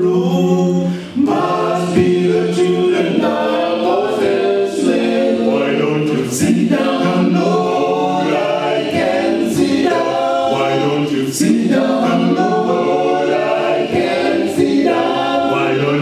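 Male a cappella gospel quintet singing in harmony, several voices at once and no instruments.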